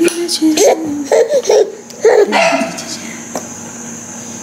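A baby giggling and babbling in short bursts during the first couple of seconds, then going quieter.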